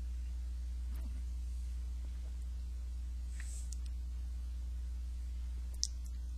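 Room tone: a steady low electrical hum, with a few faint ticks and one sharp click near the end.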